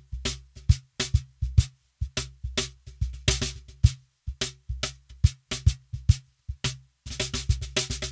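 Luna Percussion cajon played by hand with its snare wires on, close-miked with a kick drum microphone: a groove of deep bass strokes and sharper slaps, with a denser run of quick strokes near the end.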